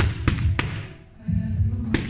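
Boxing gloves hitting focus mitts in quick, uneven punches, four sharp smacks, over background music with a heavy bass beat.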